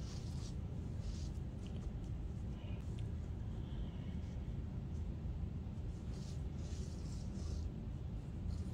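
Steady low hum of room noise, with faint, scattered soft rustles of a gloved hand sifting through dry worm-bin material.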